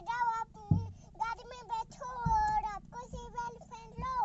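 A small child's high-pitched voice singing in short, wavering phrases, with a few dull thumps, the loudest about three quarters of a second in.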